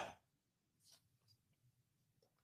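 Near silence: a pause in a conversation, with the tail of a man's word fading out at the very start.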